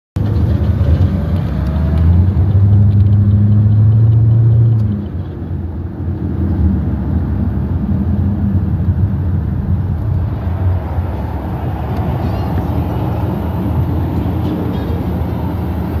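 Car engine drone and road rumble heard from inside the cabin while driving. The engine note is strongest for the first few seconds, then eases off about five seconds in, leaving a steady rumble.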